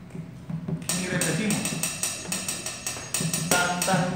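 Drumsticks striking a snare drum and cymbal in a steady pattern of sharp, bright strokes, about three to four a second, starting about a second in.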